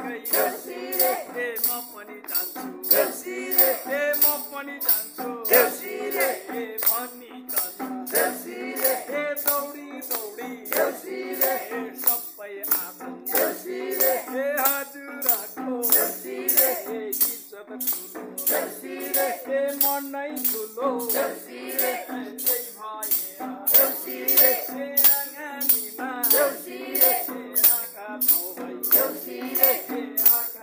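Group singing of a Nepali Deusi Bhailo festival song, accompanied by a tambourine whose jingles are struck on an even beat about twice a second.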